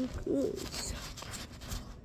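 Rustling and small knocks of a fuzzy blanket brushing and handling the phone microphone, with a child's soft, brief 'oh' about half a second in.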